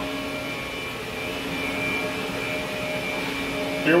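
Steady drone of running machine-shop equipment, with a faint high whine held over it.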